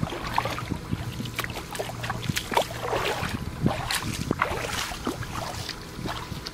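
Feet wading through shallow water, with irregular splashes several times a second.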